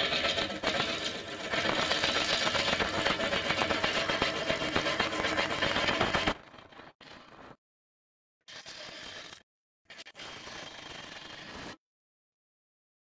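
Bowl gouge cutting into a wet spalted beech log spinning on a wood lathe, roughing it round: a loud, steady tearing cut for about six seconds, then three quieter, shorter stretches that start and stop abruptly.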